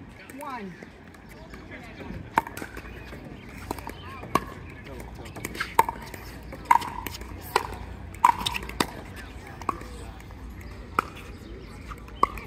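Pickleball rally: paddles hitting the hard plastic ball, about nine sharp pocks at uneven intervals, half a second to two seconds apart.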